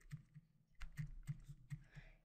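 A handful of faint, irregular ticks and taps from a stylus on a drawing tablet as handwriting is written.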